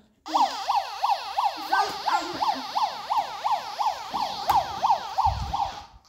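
Electronic siren of a battery-powered toy police motorcycle: a rapid rising-and-falling yelp, about three sweeps a second, that cuts off near the end. A soft low bump sounds shortly before it stops.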